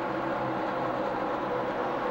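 Stock car V8 engines running at racing speed, a steady drone with no rise or fall.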